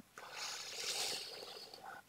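A man breathing near the microphone during a pause in his speech: a soft hiss that swells and fades over most of two seconds.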